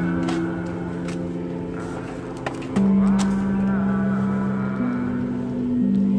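Background music of slow, held chords, changing about three seconds in and again near the five-second mark.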